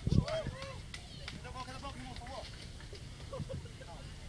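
Spectators' voices calling out and chattering around the ring, with a dull thud right at the start and a few scattered knocks. The voices grow quieter after about a second.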